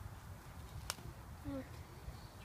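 A single sharp snap about a second in as a strawberry is pulled off its stem by hand, over a low rumble on the microphone.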